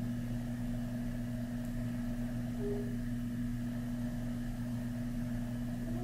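A steady hum from a motor or electrical appliance, unchanging throughout, with a faint short tone about two and a half seconds in.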